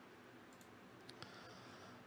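Near silence: room tone with a few faint clicks in the middle.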